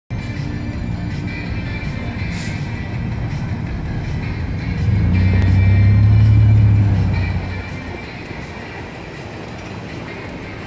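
Street sound with music: a low vehicle rumble that swells about five seconds in and fades away by about eight seconds, like a vehicle passing.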